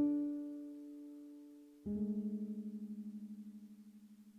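Slow, sparse keyboard music in an electric-piano tone. A chord is struck at the start and rings out, fading slowly. A second, lower chord comes in about two seconds later and fades with a quick pulsing waver.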